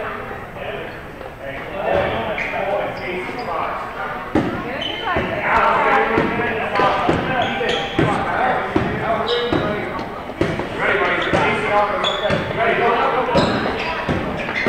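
Basketball bouncing on a gym floor, irregular thuds that come more often after the first few seconds, with voices of players and onlookers echoing in the large hall.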